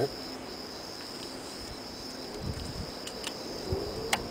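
Steady high-pitched insect trill throughout, with a few faint clicks and soft low knocks in the second half as copper wire is hand-wound onto a coil form.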